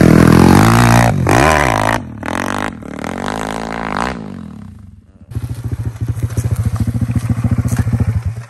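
Pit bike's single-cylinder four-stroke 140cc engine revving hard with rising pitch as it launches up a hill climb, then fading as the bike climbs away. About five seconds in, a pit bike engine starts up close by, idling with a steady fast beat.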